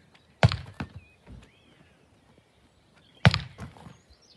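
A rugby ball thrown against a house wall and caught in goalkeeper gloves, twice: each time a sharp thump followed a moment later by a softer one, about three seconds apart.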